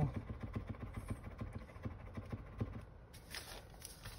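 Felt tip of a Birchwood Super Black touch-up paint pen dabbing and scratching on a paper notepad, a quick run of small irregular taps, as the paint is worked to flow from the tip. A brief rustle of paper about three seconds in.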